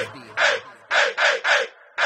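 Four short bird calls with nothing behind them. The first comes about half a second in, and the last three follow quickly, about a quarter second apart.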